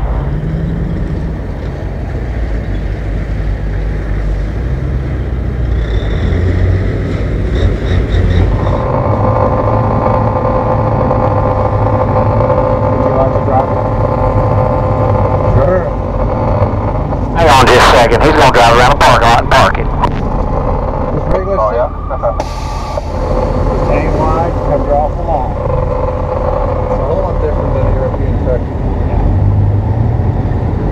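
Caterpillar diesel of a Peterbilt 359 big rig running steadily at rest. A much louder burst of noise lasts about two seconds, a little over halfway through.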